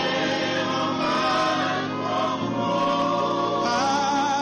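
Ghanaian gospel worship song: a choir singing long held notes over a musical backing, the low notes shifting about two and a half seconds in.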